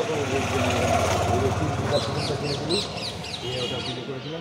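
People talking, with small birds chirping in quick series and a motor running in the background during the first half.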